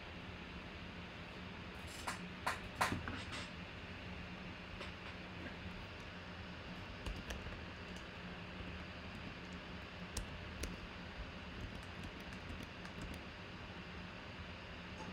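Typing on a computer keyboard: a short run of louder clicks about two seconds in, then lighter, scattered keystrokes through the second half, over a steady low hum.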